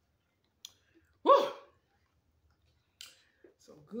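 A woman's single short, loud vocal exhale with falling pitch after a swallow of cold water, about a second and a half in, preceded by a small click. A brief breath follows, then speech starts near the end.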